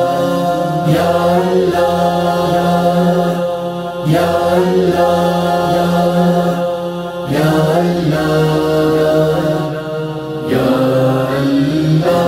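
Boys' voices singing a devotional manqabat: a chorus holds a steady hummed drone while a boy's voice sings a wordless melodic line over it, in phrases that break and restart about every three seconds.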